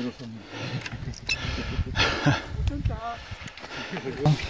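Brief snatches of voices among short scraping and rustling noises, over an irregular low rumble on the microphone.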